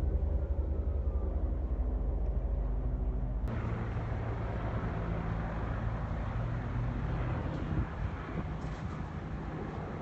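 A steady low engine drone with an even hum. About three and a half seconds in, it gives way abruptly to a broad rushing noise over a low rumble.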